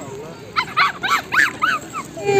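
Small dog yapping: five quick, high-pitched yaps in a row, starting about half a second in.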